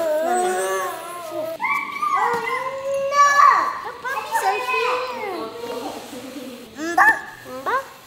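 Young children's excited babble and squeals, with short yelps from a dog among them.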